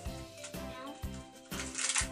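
Background music with a steady beat; about a second and a half in, a packet of Gelli Baff powder starts rattling as it is pulled from its cardboard box.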